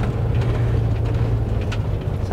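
Motorhome driving slowly, a steady low engine drone with tyre noise heard from inside the cab, with a few brief clicks.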